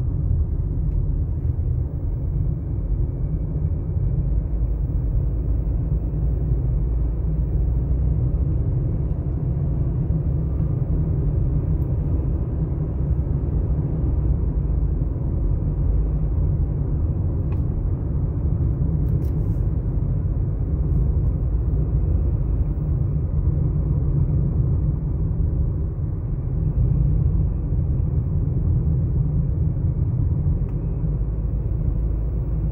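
Steady low rumble of a moving car's tyres and engine, heard inside the cabin while driving.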